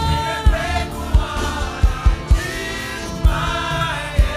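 African gospel worship song: voices singing held, gliding lines over a steady kick-drum beat.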